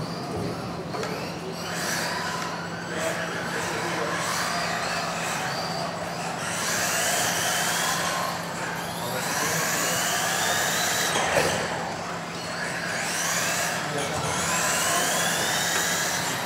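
Several 2WD radio-controlled racing cars' electric motors whining as they race, the pitch repeatedly rising as they accelerate out of corners and dropping off, with several cars overlapping. A steady low hum and a murmur of voices run underneath.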